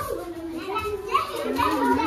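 Young children's voices chattering and calling out as they play together.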